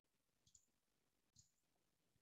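Near silence with two faint short clicks, about half a second in and about a second and a half in.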